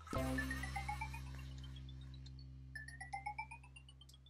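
Pink toy medical laptop scanner playing its electronic scanning sound: a low hum with a run of short beeps climbing steadily in pitch, starting over again about three seconds in, as the toy 'scans' the doll.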